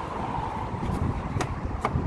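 Street traffic noise with wind on the microphone, a steady low rumble, and two sharp clicks in the second half.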